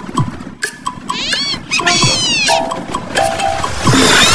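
Cartoon soundtrack: background music with high, squeaky animal-like character vocal sounds, two gliding squeals about one and two seconds in.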